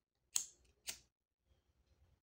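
Two sharp clicks about half a second apart, from a BIC lighter's spark wheel being flicked to light the flame.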